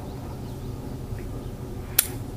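Faint outdoor background, then near the end a single sharp click with no shot: the single-action revolver's hammer falling on an already-fired chamber, a sign that the cylinder is empty.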